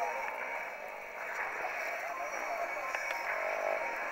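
Indistinct, distant voices that sound thin and muffled, with no clear words.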